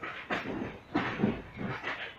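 Passenger-train coach wheels clacking over rail joints and points in an uneven run of knocks, about three or four a second, heard from aboard the moving train.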